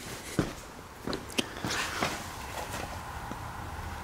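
A few light, irregular knocks and scuffs of handling and movement, over a faint steady low hum.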